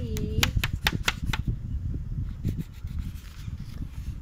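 A quick run of about eight sharp taps in the first second and a half, then low rumbling handling noise.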